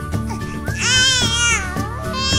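A four-month-old baby's high-pitched squeal, about a second long, that rises and then falls in pitch, starting a little before the middle, over background music.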